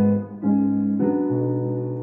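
Piano instrumental backing track playing slow sustained chords, moving to a new chord about half a second in and again about a second in.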